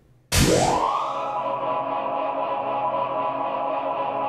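Synthesized title sting: a sudden rising swoop that levels off into a steady, held chord.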